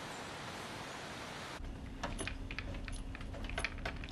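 Even outdoor background hiss, then about a second and a half in it cuts to a room with a steady low electrical hum and rapid, irregular clicking of computer keyboard typing.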